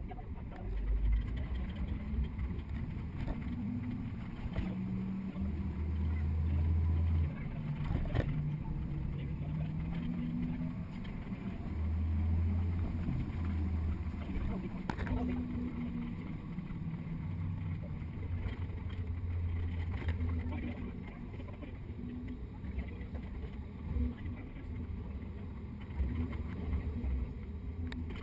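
Double-decker tour bus's engine running as it drives through traffic, its note stepping up and down with the gears over a heavy low road rumble, with a couple of sharp knocks from the ride.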